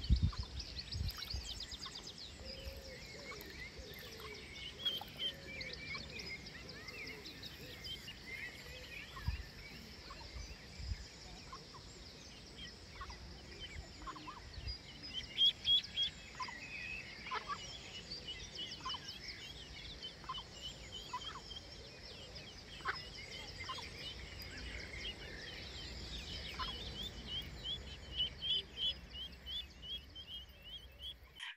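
Outdoor bird ambience: small birds singing and twittering throughout, with a low rumble of wind on the microphone at times.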